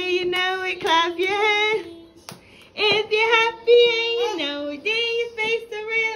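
A song with a woman and children singing, over held backing notes.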